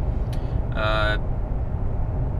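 Steady low rumble of road and engine noise inside the cabin of a moving Mercedes 220d diesel, with one short, steady-pitched tone about a second in.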